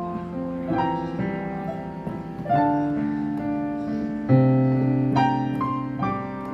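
Solo piano playing a slow worship song: chords and melody notes struck every second or so and left to ring and fade.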